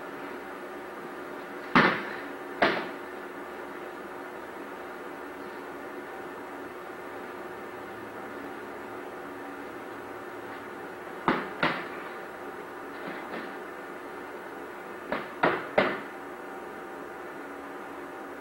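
Padded sparring sticks striking each other in sharp, sudden hits: two about two seconds in, a pair past the middle, two faint taps after that, and a quick run of three near the end.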